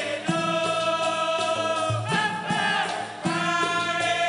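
Dikir barat: a chorus of men singing together in long held lines, with the jingle of a tambourine and a few deep percussion strokes underneath.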